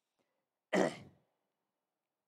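A man's single short throat-clearing cough about a second in.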